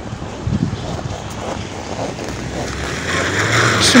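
Street traffic: a car's engine and tyres on the road, growing louder near the end as it approaches, with wind buffeting the microphone.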